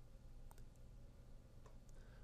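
Near silence: faint room tone with a low hum and two faint clicks about a second apart.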